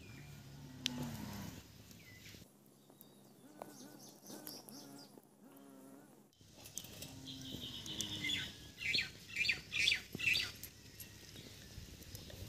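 Quiet outdoor ambience with birds chirping here and there, and a couple of faint low distant calls.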